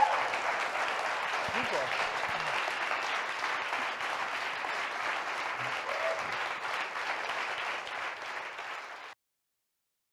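Audience applauding steadily, easing off slightly over the seconds, and cut off abruptly near the end.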